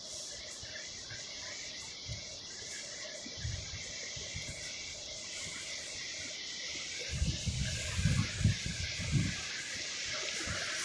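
Steady hiss of ocean surf breaking on a beach, with a few low thumps and rumbles in the last few seconds.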